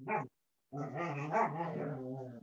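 A dog vocalising: a brief call at the start, then after a short pause one long, low, drawn-out call lasting almost two seconds.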